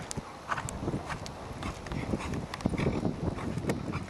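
Hoofbeats of a horse being ridden in a dressage test: a quick, uneven run of dull thuds with sharper clicks over them, loudest in the second half.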